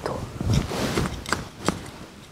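Rustling and scraping from a gardener kneeling down and working the border soil by hand to plant a seedling, with a few sharp clicks in the second half.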